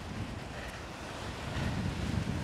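Wind buffeting the microphone over small waves washing up on a sandy beach, a steady low rumble and hiss.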